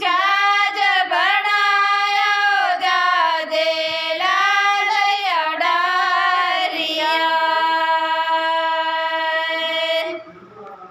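Women singing without instruments, in gliding, wavering phrases. The song ends on a long held note over the last three seconds or so, which stops abruptly.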